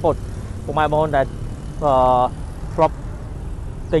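A man talking in short phrases, with one long held syllable near the middle, over a steady low vehicle rumble.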